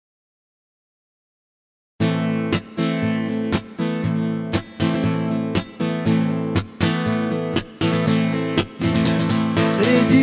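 Steel-string acoustic guitar strummed in a steady rhythmic pattern on an A minor chord, playing a song's intro. It starts abruptly about two seconds in, after complete silence.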